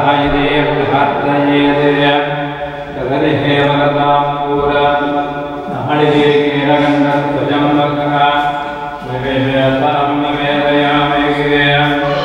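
A man's voice chanting Hindu puja mantras in long, steady held phrases, breaking for breath about every three seconds.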